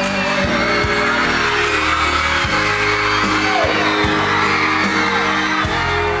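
A live pop band playing on stage while a large audience cheers and whoops over the music.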